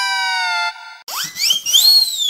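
Edited-in comic sound effects: a steady, high electronic tone lasting under a second, then, after a brief gap, a whistle-like sound that slides up in pitch and then falls away.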